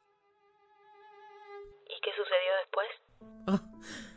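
Background music from a bowed violin: a long held note that slowly grows louder, then a louder, wavering note with vibrato about two seconds in that cuts off abruptly about three seconds in.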